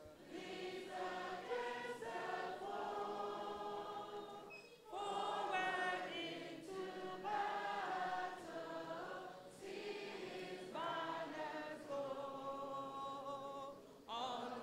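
A woman leading a group of children singing together. The song runs in phrases, with a short break just before five seconds in and smaller ones near ten and twelve seconds.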